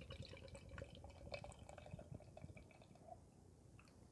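Faint pour of imperial stout from a can into a glass: liquid trickling and splashing as the glass fills, tapering off about three seconds in.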